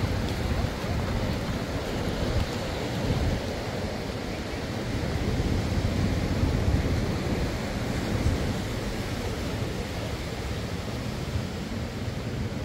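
Small waves washing in over a sandy shore: a steady rush of surf, with wind on the microphone.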